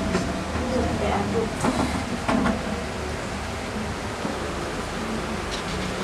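Steady low hum and hiss of background noise, with faint voices and a few soft knocks in the first two or three seconds.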